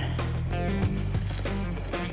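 Background music score with a steady, held low bass note.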